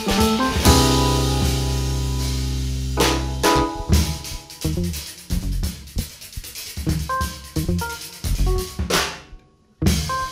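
Live jazz trio of drum kit, guitar and keyboard. A long held ensemble chord rings for about two seconds, then the band plays sparse, short accented hits and notes, dropping out briefly near the end.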